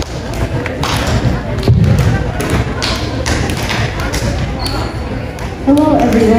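Room noise in a large hall with scattered knocks and one low thud about two seconds in, like handling at a podium microphone. A boy's voice starts over the loudspeaker near the end.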